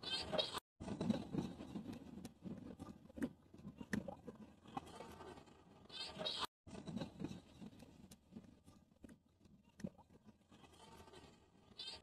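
Faint, muffled voices and crowd noise in a football stadium, picked up by a phone in the stands. The sound cuts out briefly twice and thins out over the second half.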